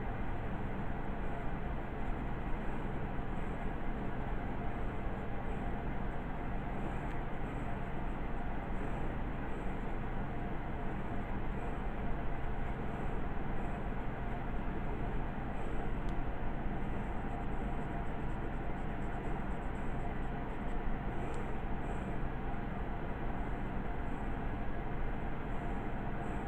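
Graphite pencil drawing on paper, faint scratching strokes over a steady background hiss and hum.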